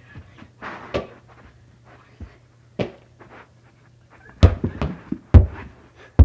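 Breathing, then a few loud thuds about a second apart in the second half: a person hitting a carpeted floor during bicycle-kick attempts.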